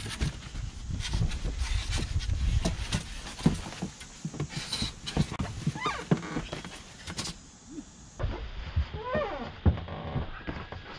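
Foam packing wrap and a cardboard box rustling and crinkling as a hard plastic motorcycle saddlebag is unpacked, with scattered clicks and knocks from handling, and a couple of short squeaky glides about six and nine seconds in.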